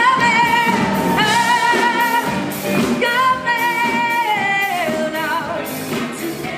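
A song with a woman singing long held notes with vibrato over band accompaniment; the second held note falls in pitch about five seconds in.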